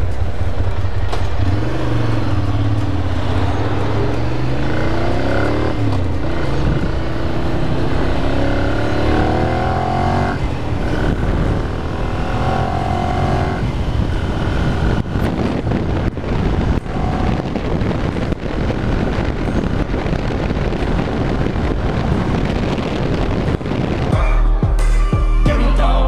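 Ducati Monster 696's air-cooled L-twin engine accelerating away through the gears, its pitch rising and dropping back at each upshift over the first fourteen seconds or so. After that the engine sound is mostly buried under steady wind noise on the camera at road speed.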